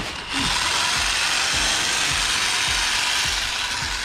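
Handheld electric bag-closing sewing machine running steadily as it stitches the top of a filled sack closed, starting about a third of a second in and stopping just before the end.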